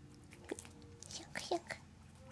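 A single sharp tap about half a second in, then a brief soft whispered voice, over faint background music.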